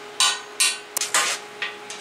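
Thin steel sheet pieces and hand tools clanking against a steel welding table as the work is set up and clamped: several irregular sharp metallic clinks over a steady hum.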